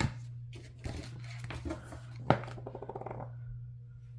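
Sticker sheets and a paper washi card being handled on a planner page: soft rustling and light taps, then one sharp click a little past halfway and a quick run of tiny clicks just after it. A steady low hum sits underneath.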